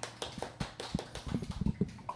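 A scatter of irregular light knocks and clicks, some with a low thud, about a dozen in two seconds.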